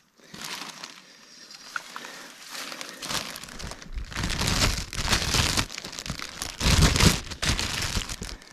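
Deflated foil balloon crinkling and crackling as it is lifted and handled, getting louder about three seconds in.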